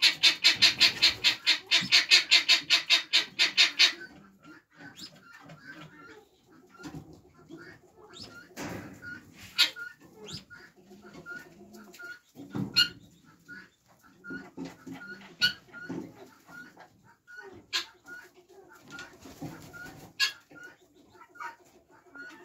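Birds calling: a loud, fast series of repeated calls for the first four seconds, then only soft, scattered calls with a few sharp clicks.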